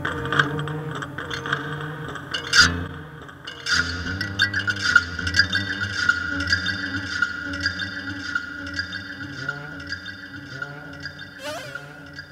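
Experimental improvisation: a box of glass and guitar strings picked up by piezo contact mics is hit, giving a dense run of small clicks and taps with a ringing tone, over a low synth drone, all fed through a delay. There is a sharp hit about two and a half seconds in and a rising swoop near the end.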